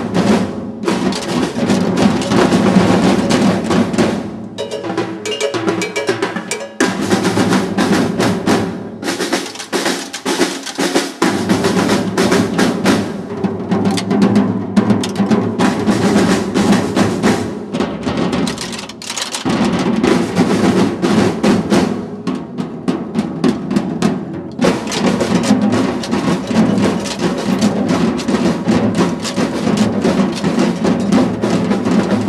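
Ensemble of drums (snare drums, tom-toms and bass drums) played together with sticks in a fast, dense rhythm. The drumming thins out briefly a few seconds in and again past the middle, then returns full.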